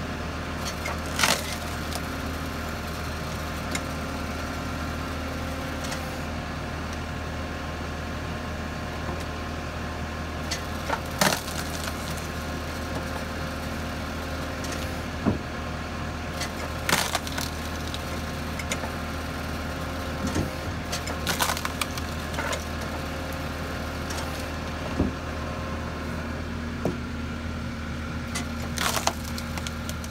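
Tractor-driven hydraulic log splitter at work: a steady low engine hum, with the loud crack and splintering of logs being split about half a dozen times.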